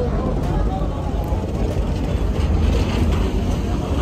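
Steady low rumble of a docked passenger ferry's diesel engines running, with other passengers' voices faint behind it.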